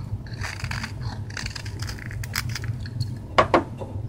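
Knife blade shaving curls off a maple stick: a few short scraping strokes through the wood, then two sharp clicks about three and a half seconds in.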